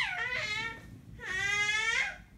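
Baby fussing: a short whiny cry that falls in pitch, then a longer, steadier one starting just over a second in.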